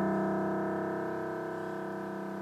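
A chamber sextet's chord, led by the piano, dying away slowly.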